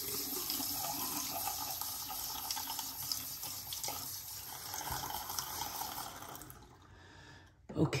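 Bathroom sink tap running while water is splashed onto the face by hand. The running water fades out about seven seconds in.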